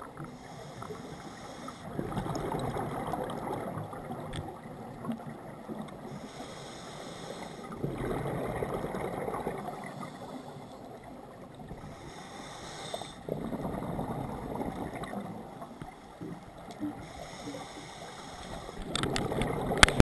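Scuba diver breathing through a regulator underwater: a thin hiss on each inhale, then a louder bubbling rush on each exhale, repeating about every five to six seconds. A sharp knock comes right at the end.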